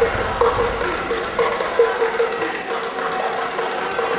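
Echoing sports-hall ambience: indistinct voices mixed with scattered taps and claps.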